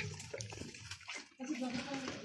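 A goat nosing and chewing through a bowl of wet chopped vegetable scraps: irregular wet, crackly rustling and munching, with people talking in the background.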